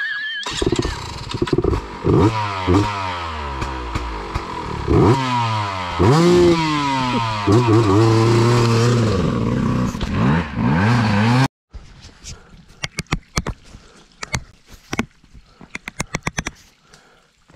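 Two-stroke dirt bike engine revved hard up and down again and again as it labours up a slick hill. The sound cuts off suddenly about three quarters of the way through, leaving only scattered light clicks and knocks.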